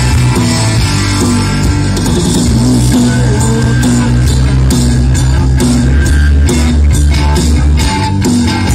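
Live punk-rock band playing loud, with electric guitars, bass and drums, heard from within the crowd.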